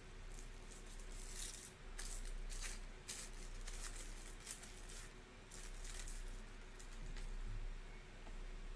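Faint, irregular scratchy rustling noises, a dozen or so short ones, over a steady low hum.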